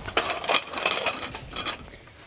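Metal clicking and rattling as a rescue strut with an extension is fitted into a clamp clevis at the base of a shore for diagonal bracing. Several irregular clicks.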